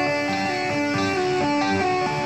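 Instrumental break in a country song: a guitar plays a melody line of changing notes over the backing.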